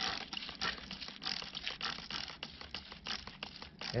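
Gloved fingers scratching and brushing away dry, crumbly soil and leaf litter to uncover a stone blade, a run of irregular crackling scrapes.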